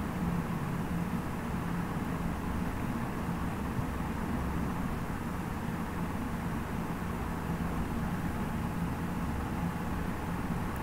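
Steady background hum and hiss of room noise, even throughout, with a low hum and a faint steady tone and no distinct events.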